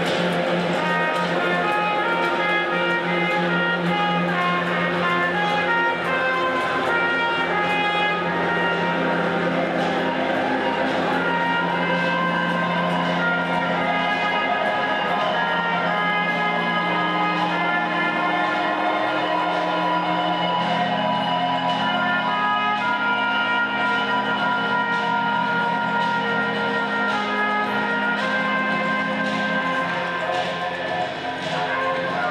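Live band playing: a trumpet carries held melodic notes over guitar and a sustained low accompaniment.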